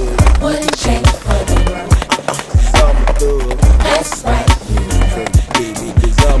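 Hip-hop music with a heavy bass beat and a wavering melodic line.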